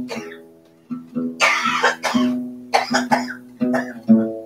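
Acoustic guitar strummed in chords that ring between strokes, with two short harsh noisy bursts over it about a second and a half and three seconds in.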